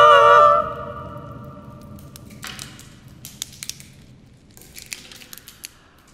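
Women's voices holding a chord a cappella, cutting off about half a second in and ringing away in the room's reverberation. Then scattered small cracks and rustles as a twig is handled close to a microphone.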